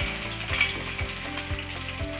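Chopped shallots sizzling in hot oil in a clay pot, a steady frying hiss, just after they are tipped in from a steel plate.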